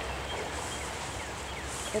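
River carp spawning in shallow flooded grass, splashing and stirring the water with their backs half out of it: a steady wash of water noise.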